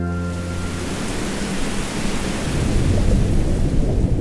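Heavy rain falling on open water, a steady hiss, with a low rumble underneath that grows louder in the second half.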